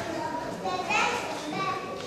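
Young children's voices chattering in a large room, with a rising call about a second in.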